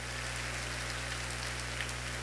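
Congregation applauding steadily, fairly faint, with a steady low electrical hum underneath.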